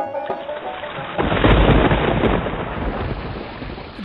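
Thunder rumbling over the steady hiss of rain. The rumble swells about a second in, then slowly dies away.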